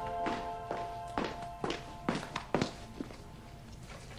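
Footsteps on a hard floor, a row of about seven sharp knocks at roughly two a second that stop about two and a half seconds in, under soft background music that fades away.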